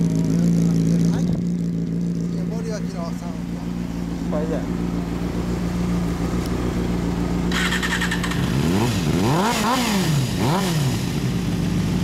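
Inline-four motorcycle engine idling steadily through an aftermarket exhaust, then revved with several quick throttle blips from about eight and a half seconds in, each rising and falling in pitch.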